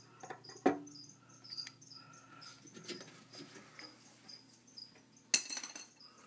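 Crickets chirping steadily, with scattered clicks and knocks of a small glass vial against a plastic container, the sharpest about a second in. Near the end comes a loud, brief burst of handling noise.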